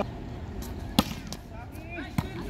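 A volleyball struck once by hand in a serve: a single sharp smack about halfway through, with faint players' voices around it.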